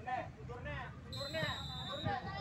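Spectators and young players calling out and chattering, several voices overlapping with no clear words. A thin, steady high-pitched tone comes in about halfway through.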